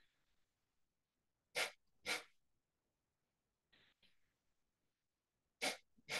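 Two pairs of short, forceful nasal exhalations, the double kapalbhati breaths of yoga breathwork. The breaths in each pair come about half a second apart, one pair a little over a second in and one pair near the end. Between the pairs there is a faint hiss of an ujjayi inhalation drawn through a narrowed throat.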